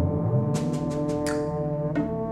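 Orchestral western film score: held low chords with a quick run of sharp percussion strikes in the first second and a half.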